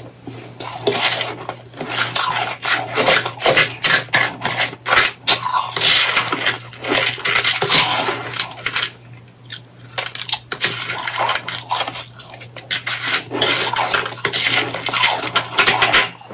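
Close-miked chewing of powdery shaved ice: soft, crackly crunches in quick runs that come in several bouts, with short pauses between them.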